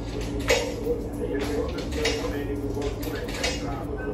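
Steady hum of laundromat tumble dryers running, with a sharp click about half a second in and a few short rattles of a wallet and coins being handled.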